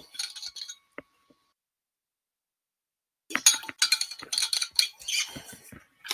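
Light clinks and clatters of small hard objects being handled: a few in the first second, then a gap of silence, then a busy run of clicks from about three seconds in.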